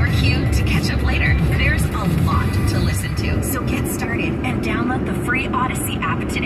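Car radio playing music with a voice over it, heard inside the cabin over steady road and engine rumble.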